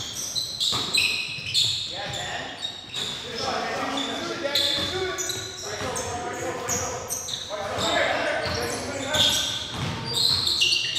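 Live basketball play on a hardwood gym floor: the ball bouncing, sneakers squeaking and players calling out to each other, echoing in the large gym.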